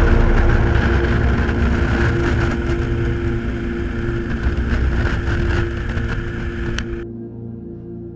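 Motorcycle riding at motorway speed: steady engine and wind noise at the bike, mixed under ambient background music with a sustained drone. The road noise cuts off suddenly about seven seconds in, leaving only the music.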